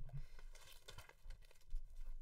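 Quiet small-room tone with a few faint rustles and soft clicks, like light handling noise, after a word trails off at the very start.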